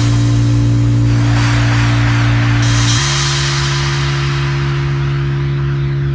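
Electronic dance music in a breakdown with no beat: a held low synth chord that changes to another chord about halfway through, under a hiss that swells and fills the top from around the middle.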